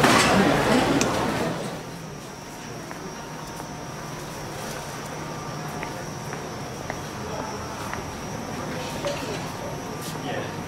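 Market crowd ambience: background chatter and voices of passers-by, louder in the first second or so and then falling to a steady lower murmur, with a faint steady high tone and occasional small clicks.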